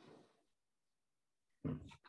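Near silence, then about one and a half seconds in a person's short "hmm".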